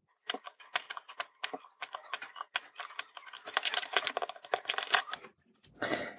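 A run of small, irregular clicks and ticks from hand soldering a surface-mount resistor joint on a small circuit board: the soldering iron tip, the solder wire and the board being handled, with a quick cluster of ticks in the second half.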